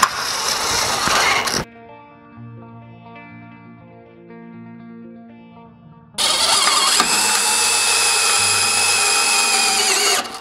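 Cordless driver running as it drives screws into a stair post's base cover, for about the first second and a half and again from about six seconds in, with a steady whine. In between, only quiet background music.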